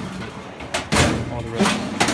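Top drawer of a metal lateral file cabinet being worked by hand on its glides, a rough sliding rumble with a sharp metal knock about a second in. The drawer is sticky and has to be pushed on its right side to close.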